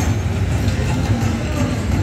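Slot machine playing its free-spin bonus music and reel-spin sounds over a steady low rumble.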